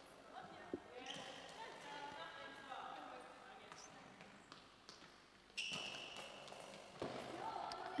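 Quiet sports hall with faint voices and a goalball thudding on the court floor, plus a sudden brief sound about five and a half seconds in.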